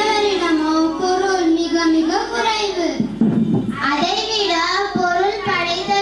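A girl singing a smooth, held melody into a handheld microphone, with a brief low rumble about halfway through.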